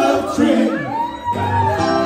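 Live band with singers holding long notes over sustained chords. The steady drumbeat stops right at the start.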